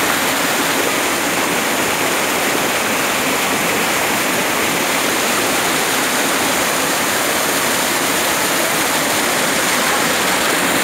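Stream water rushing and churning over rocks in a small cascade, a loud, steady rush with no breaks.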